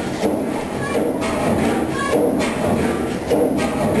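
Crossley HH11 37-litre single-cylinder diesel engine running slowly, with a heavy beat a little more than once a second.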